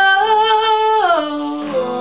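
A woman singing one long held note over acoustic guitar; about a second in, her voice slides down to a lower note while the guitar rings on.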